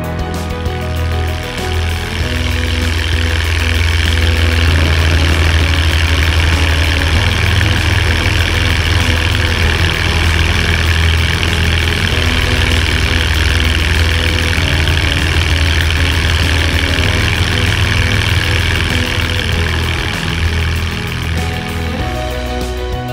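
Just Aircraft Super STOL light aircraft's engine and propeller running at full power through the takeoff roll and climb-out, with a steady low drone and a rush of airflow that builds over the first few seconds and then holds. Background music plays underneath.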